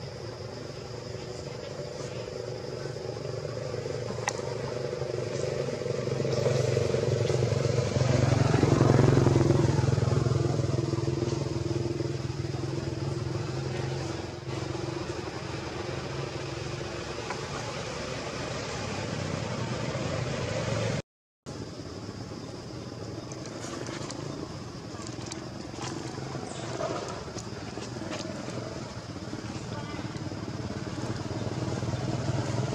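A motor vehicle's engine humming, growing louder to a peak about nine seconds in and fading away as it passes. The sound cuts out for a moment about 21 seconds in.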